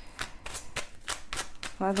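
A deck of oracle cards being shuffled by hand: a quick run of soft card flicks, about five a second. A woman's voice comes in near the end.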